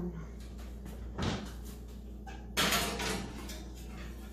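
An electric range's oven door being opened about a second in, then a louder, longer clatter about two and a half seconds in as a glass loaf pan is pushed onto the oven rack.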